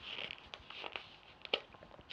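Tarot cards being handled: a faint rustle in the first second, then a few soft, sharp taps as cards are pulled and laid down.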